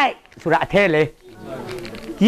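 Only speech: a man speaking a short phrase with a rising and falling pitch, then a quieter moment near the end.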